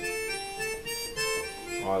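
Yamaha arranger keyboard playing a melody on its accordion voice, a few held notes changing every half second or so. The notes are played plainly, without the accents, so they run together.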